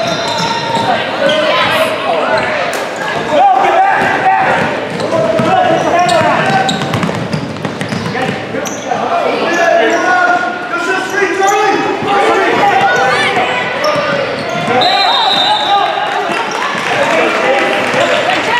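Spectators in a gym calling and shouting over one another while a basketball bounces on the hardwood court, with the hall's echo.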